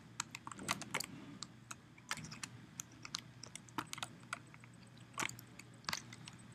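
Faint, irregular clicking of a computer mouse and keyboard, with one louder click about five seconds in, over a faint low steady hum.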